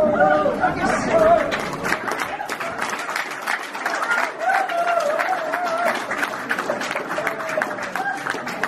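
Two fiddles end a tune on a last wavering note, and about a second and a half in, audience applause breaks out, with voices over the clapping.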